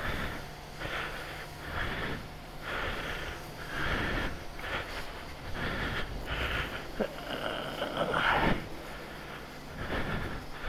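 High-pressure jet wash lance spraying water onto a motorcycle, the hiss swelling and fading about once a second as the jet sweeps across the bike, over a steady low hum.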